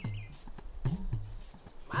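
Background music: a sparse drum beat of low strokes that bend in pitch, about one a second, with light clicks between them. A bird chirps briefly near the start.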